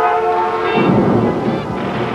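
A commercial's soundtrack for heavy city traffic: a held chord of several steady tones, then a low, rough rumble that comes in about two-thirds of a second in.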